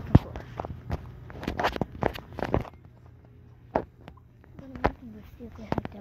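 Footsteps and knocks from a handheld phone being carried and moved while walking, a string of uneven taps and thumps, the sharpest just after the start, with brief faint voices between them.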